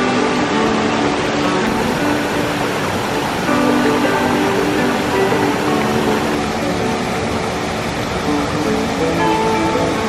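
Background music with sustained notes, laid over the steady rush of a stream tumbling over small waterfalls.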